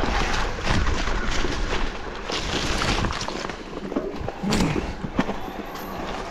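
Mountain bike riding down a narrow, wet forest singletrack: tyres rolling over dirt and wet leaves, with the bike rattling and knocking over bumps throughout. A brief vocal sound comes about four and a half seconds in.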